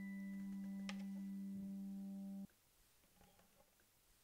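Bowl-back mandolin holding a low steady note, with a light plucked note about a second in. The note is cut off abruptly about two and a half seconds in, leaving a near-silent pause in the music.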